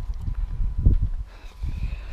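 Irregular low thumps and rumble on a handheld action camera's microphone, the loudest a little under a second in: wind and handling noise while walking.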